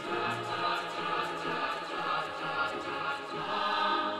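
A mixed choir singing together in full voice. The voices come in all at once right at the start and hold a dense, sustained sound.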